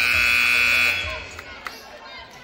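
Gym scoreboard buzzer sounding one loud steady note for about a second as its clock runs out to zero.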